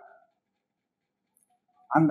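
Near silence in a pause of a man's speech: his voice trails off at the start and starts again just before the end.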